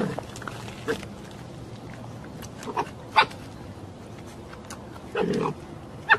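An animal giving a few short, separate calls, with a longer one about five seconds in.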